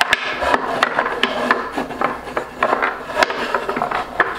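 Rapid, irregular wooden clicks and knocks from a homemade mini foosball table in play: wooden dowel rods sliding and twisting in the wooden frame, and the players striking the small ball.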